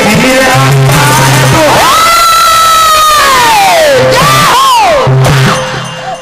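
Live Indian devotional folk music with dholak drumming, over which a male singer holds a long high cry for about two seconds that slides down in pitch, followed by a shorter falling cry. The music drops away near the end.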